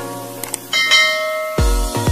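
Subscribe-button sound effect: two quick clicks, then a bright bell chime that rings out and fades over about a second. Electronic music with a heavy bass beat starts near the end.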